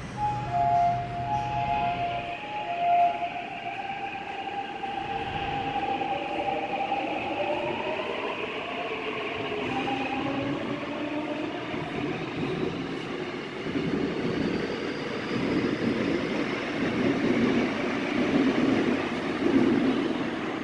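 Seoul Subway Line 6 electric train departing: a short two-tone chime in the first three seconds, then the motors' whine rising in pitch as the train pulls away, with wheel rumble growing louder near the end as the cars pass.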